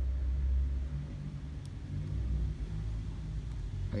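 Low steady background rumble with a faint hum and no distinct events.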